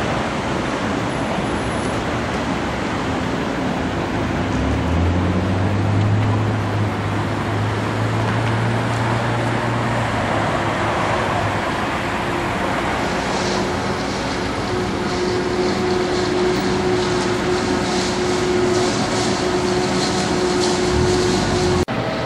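Steady road traffic: motor vehicles passing on a busy road. A heavy vehicle's low engine drone stands out for several seconds near the middle.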